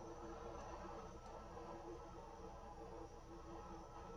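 Handheld butane torch burning with a faint, steady hiss.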